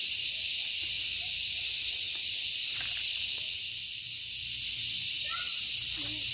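Steady, high-pitched insect chorus: an even hiss that neither pulses nor breaks.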